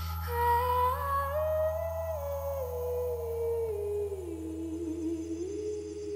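Live band music: a woman's wordless vocal line, rising and then slowly falling in pitch, over a steady low bass note.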